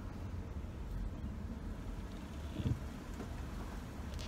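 Low, steady rumble of a car engine and road noise heard from inside the cabin, with one brief thump a little over halfway through.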